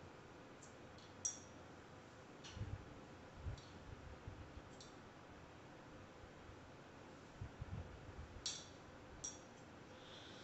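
Faint single snips of grooming shears cutting the hair along a dog's ear edge: about seven short, sharp clicks, spread out, with a pause in the middle. Soft low bumps from handling come in between.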